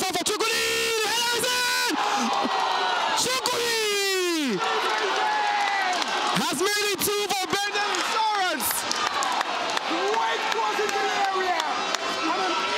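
A man shouting excitedly in long, drawn-out calls that hold and then slide down in pitch, over steady stadium crowd noise.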